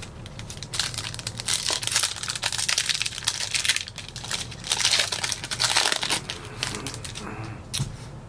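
A foil trading-card pack of 2021-22 Optic basketball cards being crinkled and torn open by hand, with a run of irregular crackling rustles that dies down near the end.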